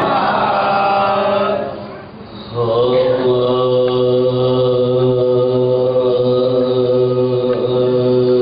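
Unaccompanied male voice chanting a marsiya in soz-khwani style. A falling melodic line is followed by a short break for breath about two seconds in, then one long note held at a steady pitch.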